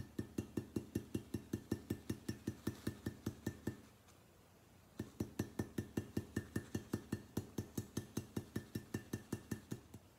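Stencil brush pounced quickly up and down on a paper stencil taped to a glass jar, stippling paint through it: about six light taps a second, each with a faint glassy clink. The tapping comes in two runs, with a pause of about a second in the middle.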